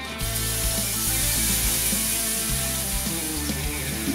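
Beef stock poured into a hot foil tray of short ribs on a kamado grill, sizzling and hissing steadily as it hits the hot metal; the hiss starts just after the pour begins.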